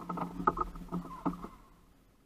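Fishing reel's drag clicking rapidly as line is pulled off the trolling rod by a striking fish, stopping about one and a half seconds in.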